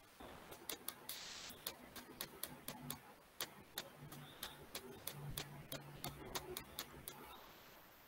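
Faint computer mouse clicks in a long irregular run, about three a second, as keys of a simulated keypad on screen are clicked over and over.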